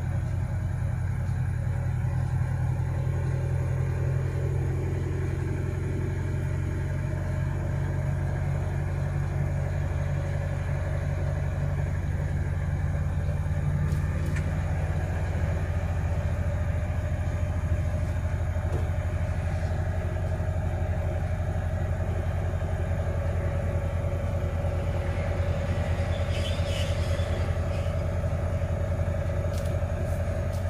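Laden truck's engine droning steadily as it drives, heard from inside the cab along with road noise.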